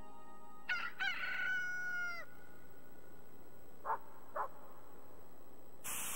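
A rooster crows once: a long call that rises and then holds, followed by two short calls. Near the end, sausages start sizzling in a frying pan.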